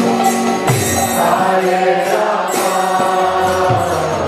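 Kirtan: devotional chanting in long held notes over sustained accompaniment, with a few sharp percussion strikes.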